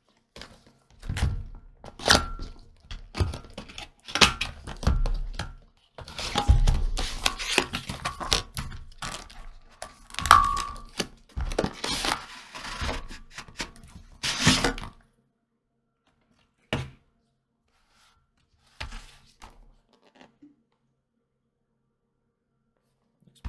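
Cardboard product box being handled and opened: a busy run of knocks, scrapes and rustles as the box is turned, its flap opened and the inner box pulled out. This stops about 15 s in, leaving only a few light taps near the end.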